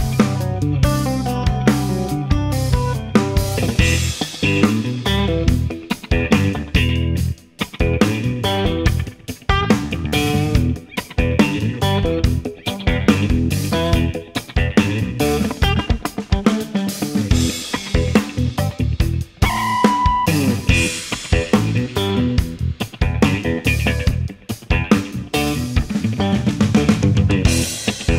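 Instrumental rock track led by an Ibanez AZN electric guitar played through two Joyo BanTamP amps in stereo, picking quick melodic runs over drums and bass. The guitar holds one long note about two-thirds of the way in.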